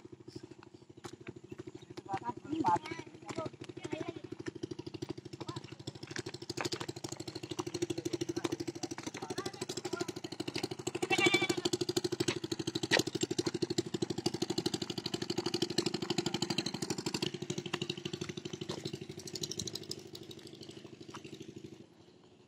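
A motor engine running steadily with a fast, even pulse. It grows louder through the middle and fades near the end, with voices briefly over it.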